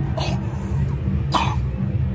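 Two short coughs from a person, about a second apart, over a steady low hum.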